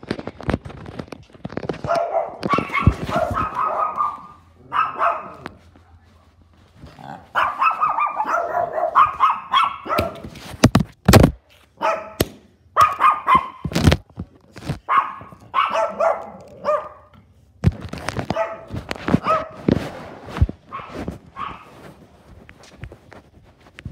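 A small dog barking in repeated bursts, with sharp knocks and thuds among the barks, the loudest knocks coming about halfway through.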